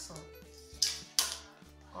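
Two short, sharp clatters about a second in, less than half a second apart, as a clear plastic ruler and a pen are set down on the table, over steady background music.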